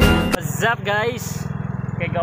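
Background music cuts off about half a second in, giving way to a Suzuki Raider J 115 Fi motorcycle's single-cylinder four-stroke engine running steadily at a fast even pulse while under way, with a voice over it.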